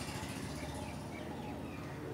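Quiet outdoor background with a steady low hum and a few faint bird chirps.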